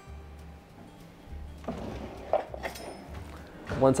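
Soft background music with a pulsing bass line. A brief soft noise comes about halfway through.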